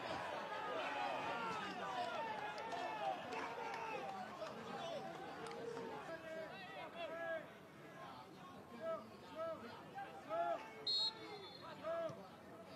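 Several male voices shouting and calling to one another at once, players on the pitch heard without any crowd noise in an empty stadium. Separate loud shouts stand out near the end, with a brief high tone about eleven seconds in.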